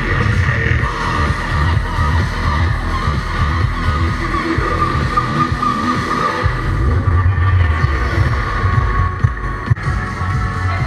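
Loud electronic dance music from a live DJ set over a club PA, with a heavy, steady bass line.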